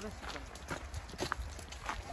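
Footsteps on a trail covered in dry fallen leaves: a few irregular crunches and knocks over a low rumble.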